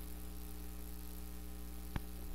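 Steady electrical mains hum from the sound system, with one short click near the end.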